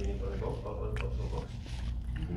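Close-miked chewing and mouth sounds from people eating, with short closed-mouth hums, and a sharp click about a second in, typical of a fork against a plate.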